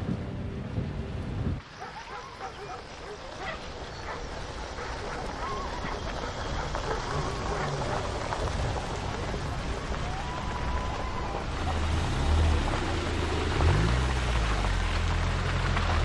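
A Chevrolet Camaro's engine running, a low steady rumble that swells over the last few seconds, over a steady hiss of rain.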